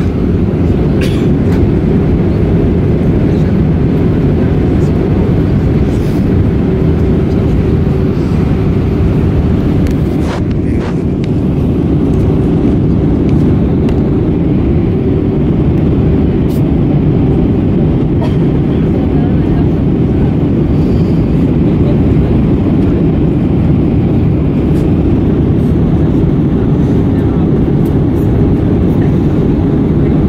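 Steady, loud cabin noise of a jet airliner in flight during descent: engine and airflow noise heard from inside the cabin, with a few faint clicks.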